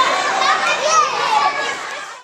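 Many children's voices shouting and calling over one another, a busy din of children playing.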